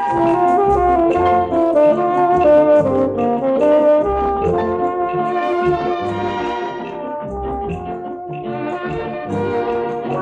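Light orchestral dance music from a 1950s Seeburg 45 rpm EP jukebox record, with brass carrying a moving melody and no singing, a little softer in the second half.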